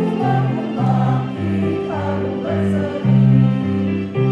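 A small choir singing a hymn to instrumental accompaniment, its bass notes held and changing in steps every half second or so.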